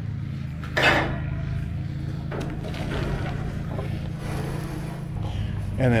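A steady low machine hum, with a short rustling burst about a second in and a faint click a little after two seconds.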